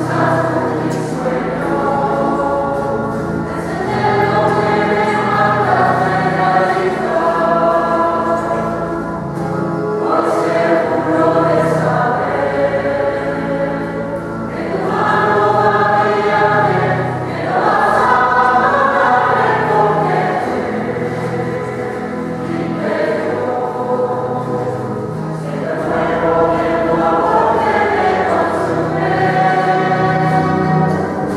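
A group of voices singing a hymn together, in sustained phrases of a few seconds each.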